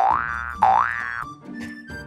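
Two loud cartoon-style comedy sound effects, swooping tones like a boing or slide whistle. The first glides up, and the second dips and then rises. They are laid over light background music.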